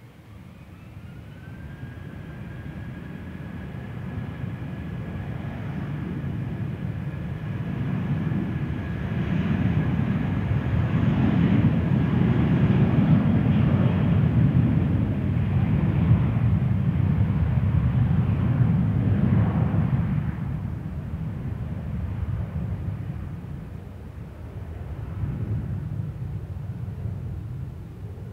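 Airbus A320-232's twin IAE V2500 turbofan engines spooling up for take-off: a whine rises about a second in and then holds steady. Under it a loud jet rumble builds as the airliner rolls down the runway, peaks midway, then fades as it moves away.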